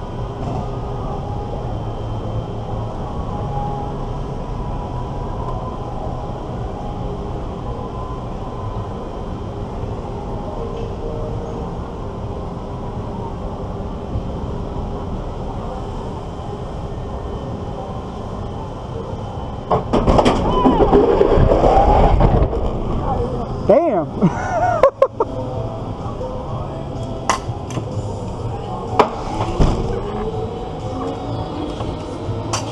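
On-ride sound of an amusement-park drop tower: a steady wind and machinery hum while the seats sit high above the park. About two-thirds of the way in, a sudden loud rush of wind comes as the ride drops without warning, with riders' voices rising and falling through it, then a few sharp knocks as it brakes and settles.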